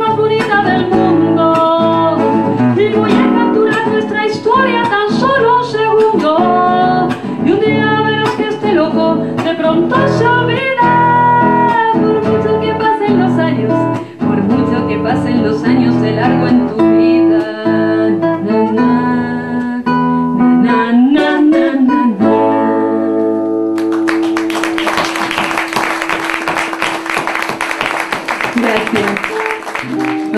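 A woman singing a Spanish-language ballad with classical guitar accompaniment. The song ends about 23 seconds in on a held chord, and clapping from the audience fills the last six seconds.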